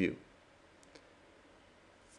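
Two faint computer mouse clicks a little under a second in, against otherwise near-silent room tone.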